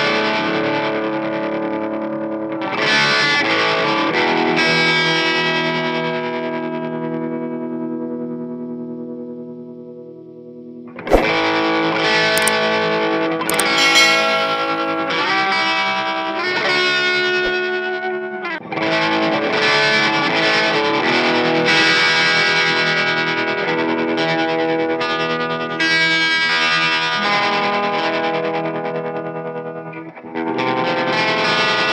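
Distorted electric guitar played through an Electro-Harmonix Stereo Pulsar tremolo pedal into a Jet City amp. A chord rings and slowly fades over several seconds, then strummed playing starts again about eleven seconds in and carries on.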